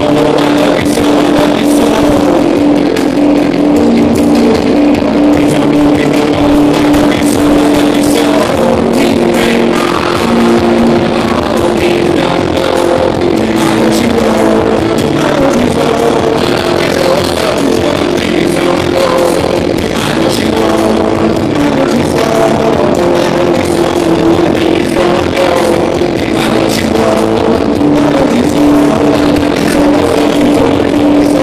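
Indie rock band playing live in a concert hall, with electric guitar, keyboards and drums, and held keyboard notes running through the music.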